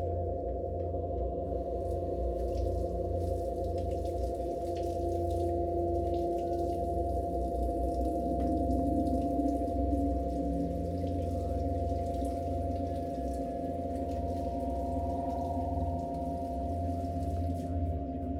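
Dense drone of many sine-wave oscillators clustered around the pitches D-flat, F, G-flat, A-flat, B-flat and C, held as one steady low chord. A faint higher tone joins about fourteen seconds in and fades before the end.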